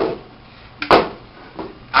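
Potato masher working softened ice cream and matcha in a stainless steel bowl: three short scraping strokes a little under a second apart, the loudest about a second in, with a light clink of metal.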